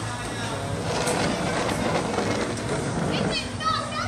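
Indistinct background voices over a steady rushing noise, with a few short high chirps near the end.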